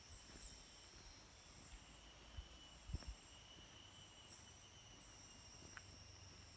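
Faint, steady high-pitched insect calls from the jungle, several held tones at different pitches sounding together. A few soft thumps of footsteps on the dirt track stand out near the middle.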